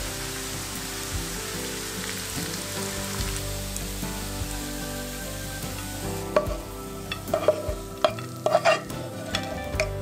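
Pork belly sizzling in hot oil in a frying pan, then, from about six seconds in, a run of sharp clicks and knocks as a spatula scrapes and taps against the pan and plate while the pork is served.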